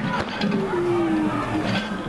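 Loaded barbell clanking as a weightlifter catches a 170 kg clean, followed by a drawn-out voice sound, falling in pitch for about a second, as he rises out of the squat. There is another short rattle of the bar near the end.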